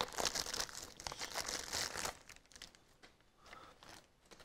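A clear plastic packaging bag crinkling as it is torn open and a network cable tester is pulled out of it; the crinkling stops about two seconds in.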